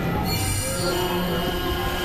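Experimental electronic noise music: layered synthesizer drones, several steady tones held at different pitches, some high, over a dense, noisy low rumble.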